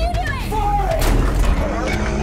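Film soundtrack mix: a short wordless vocal cry over a heavy, low music bed, with a sharp hit about a second in.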